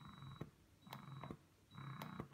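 Spectra 9 Plus electric breast pump running in letdown mode, faint, cycling about once every 0.85 s (70 cycles per minute). Each cycle is a thin high whine lasting about half a second, with soft clicks between cycles.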